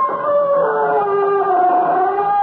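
Eerie closing theme music of an old-time radio drama: several long held tones sounding together, one sliding lower about half a second in, with a howl-like quality.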